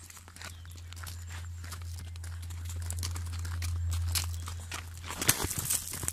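A horse walking close by, its hooves stepping irregularly, over a steady low hum. A sharp, louder noise comes about five seconds in.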